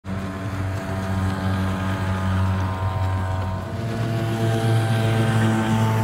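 Tohatsu 5 hp single-cylinder two-stroke outboard running at speed under way, a steady engine note over the hiss of water and wind. About four seconds in the note steps up a little in pitch, as the stock motor gives way to the modified one with ported transfer and exhaust ports, a high-compression head and a bored-out carburettor.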